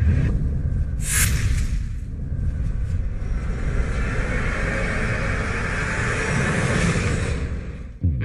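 Television stage sound effect: a deep rumble with a whoosh about a second in, then a hissing swell that builds and cuts off just before the band comes in.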